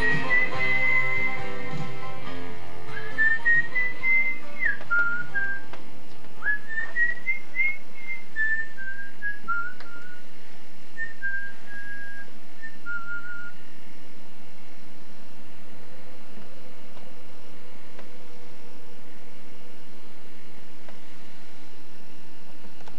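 A person whistling a tune in short, gliding notes, over the tail of guitar music that fades out in the first two seconds; the whistling stops about thirteen seconds in, leaving only faint steady hum and hiss.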